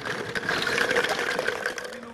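Many small glass bottles clinking and rattling against one another as a hand rummages through a paper bag full of them, in a dense run of small clicks.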